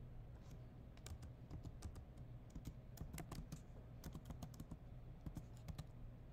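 Faint typing on a computer keyboard: irregular keystrokes in quick runs, starting about half a second in and stopping near the end.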